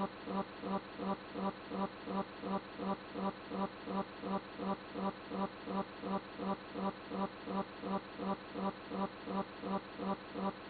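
A steady buzzing hum that pulses evenly, about two and a half times a second, without a break.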